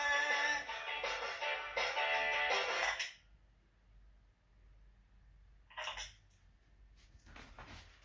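Instrumental music playing, then cutting off abruptly about three seconds in. Near silence follows, broken by one brief faint noise about six seconds in.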